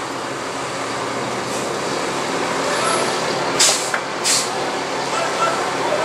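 Steady background noise, like a fan or air handler running, with two short hisses a little past the middle, under a second apart.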